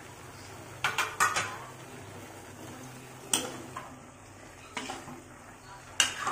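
Metal ladle clinking and scraping against a large metal wok while a stew of pork and diced potatoes is stirred: a quick cluster of sharp clinks about a second in, then single knocks a few seconds later.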